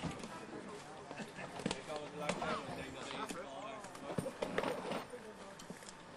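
Indistinct chatter of several people talking at once, with scattered light knocks and clicks.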